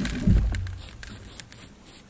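A sharp click and then a heavy, deep thump with a rumble that fades over about a second, followed by a few lighter clicks: the camera or its tripod being bumped and handled.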